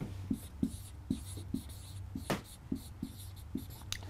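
Felt-tip marker writing on a whiteboard: a quick run of short strokes and taps as a word is written out by hand.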